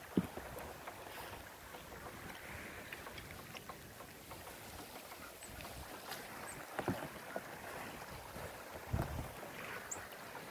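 Steady hiss of wind and water lapping against a rocky lake shore, broken by a few dull knocks.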